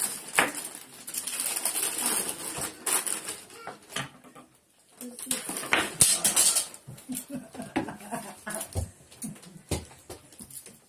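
Wrapping paper rustling and crinkling as it is handled and folded around a box, in irregular sharp crackles, loudest about six seconds in.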